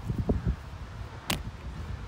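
Wind buffeting the microphone, an uneven low rumble that rises and falls in gusts, with one sharp click a little past halfway.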